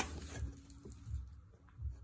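Quiet handling of a rolled paper poster being held open: a short paper rustle at the start, then soft bumps and a couple of small clicks.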